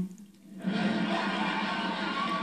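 Audience laughing and applauding after a punchline: a dense wash of crowd noise that comes in suddenly about half a second in, after a brief silence, and holds steady.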